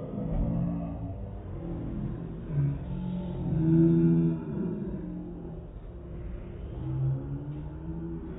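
Muffled, low, drawn-out voice sounds, several in a row, the loudest about four seconds in.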